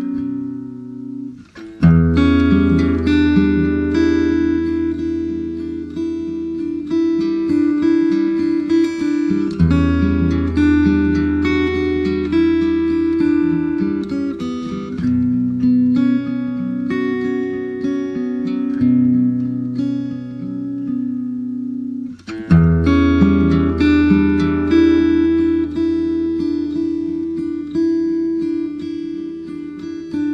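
Instrumental rock music led by acoustic guitar playing a repeating picked and strummed figure over held low bass notes. The music drops away briefly about a second and a half in, and a new phrase comes in strongly about 22 seconds in.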